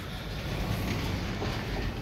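Schindler 3300 elevator arriving at the landing and opening its doors: a steady low rumble that grows a little louder through the first second.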